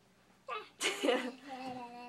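A person sneezes about half a second in, with a short intake and then a loud, sharp burst. It is followed by a long, steady hummed note held on one pitch.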